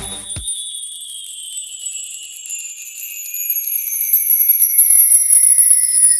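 A shimmering, tinkling chime sweep like a cascade of small bells, slowly falling in pitch and growing louder, used as a title-sting sound effect.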